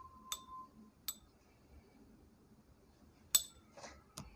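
A paintbrush clinking against the rim of a glass ink jar: three light, ringing clinks, the loudest about three seconds in, then a brief soft scrape.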